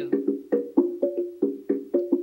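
Wooden percussion struck with mallets, playing a quick steady rhythm of about five strokes a second that alternates between a higher and a lower pitch.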